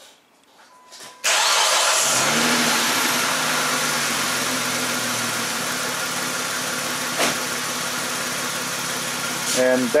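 Car engine starting abruptly about a second in, then settling into a steady idle that slowly eases in loudness.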